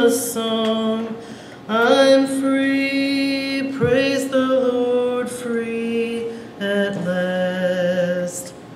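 A woman singing a gospel solo into a microphone, holding long notes between short breaths.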